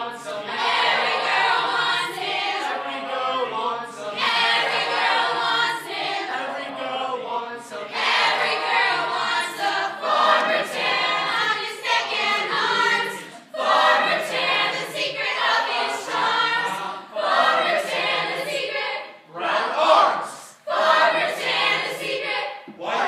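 A mixed group of young voices singing together a cappella, in phrases broken by brief pauses; the phrases turn short and choppy near the end.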